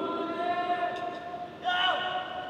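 A voice over a public-address system holding one long drawn-out call, followed near the end by a short shout falling in pitch.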